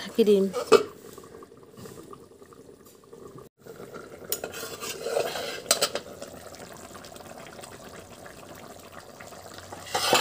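Steel lid on an iron karahi, clinking a few times against the rim, over a fish curry simmering quietly underneath; right at the end a louder clatter and hiss as the lid comes off.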